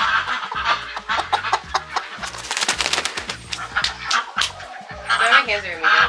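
Hens clucking over light background music, with a short burst of rustling near the middle.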